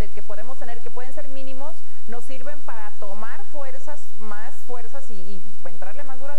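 A woman talking continuously.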